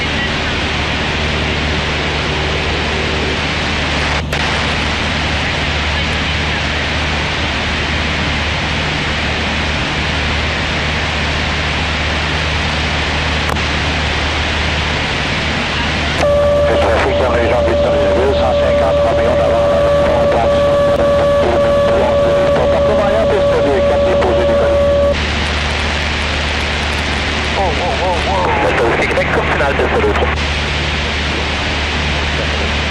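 Cessna 152's four-cylinder Lycoming engine and propeller droning steadily in cruise, heard inside the cockpit. Partway through, a radio transmission cuts in for about nine seconds, a steady whistle over indistinct voices, then cuts off abruptly.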